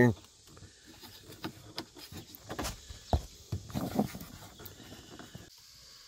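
Faint scattered clicks and knocks of hands working at a plastic dashboard trim panel, trying to pop its clips loose, with a short low thump about three seconds in.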